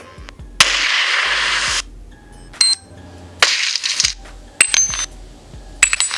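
Game-style keypress sound effects from a phone keyboard app played one after another through the phone's speaker: gun and explosion samples and the metallic clinks of falling bullet casings. About five short effects come roughly a second apart, two of them longer hissing blasts.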